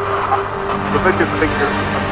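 Dark electro / EBM track with a steady low synth drone, and a distorted, processed voice sample coming in under a second in.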